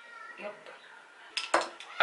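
A short clatter of makeup brushes knocking together as a handful is gathered up: a few sharp clicks about one and a half seconds in.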